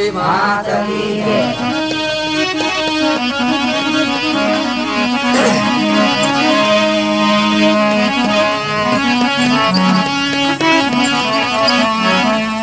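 Instrumental break in a Rajasthani devotional bhajan: a reedy free-reed keyboard instrument plays a melody in sustained notes that move in steps, over held lower notes.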